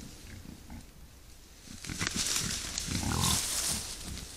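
Wild boar grunting in short low grunts while foraging, with a louder, longer grunt and a rustle of dry grass in the second half as one boar pushes through the tussocks.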